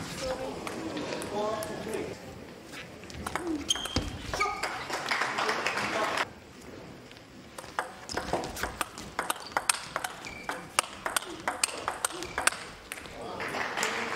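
Table tennis rally: a celluloid-type ball struck back and forth by rubber-faced bats and bouncing on the table, heard as a rapid, uneven run of sharp clicks in the second half.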